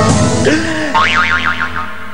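Cartoon-style sound effects in a TV advertisement: a rush of noise at the start, a short tone that bends up and then down, then a high tone wobbling rapidly up and down, about seven times a second, for nearly a second.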